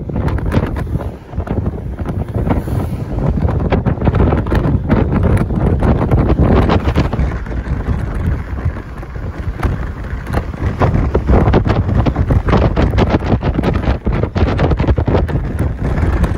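Wind blowing over the microphone of a moving vehicle, a loud, uneven low rush mixed with road and engine noise.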